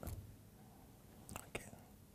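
Near silence: quiet room tone after a spoken word fades out, with two faint short sounds about a second and a half in.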